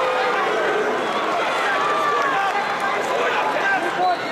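Arena crowd of many voices shouting and calling out at once, no single speaker standing out.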